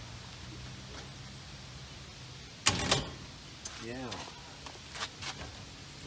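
A sharp clatter about three seconds in, followed by a few lighter knocks, as things are handled in a steel Husky storage cabinet and its door is worked.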